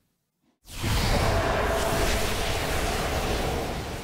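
Sound-design transition effect: a dense rush of noise spread across all pitches comes in suddenly after a short silence, holds steady, then slowly fades near the end.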